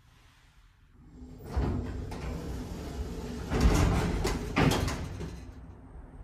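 Schindler 300A elevator's sliding stainless doors opening. The sound starts about a second in, and two louder knocks come near the end of the travel.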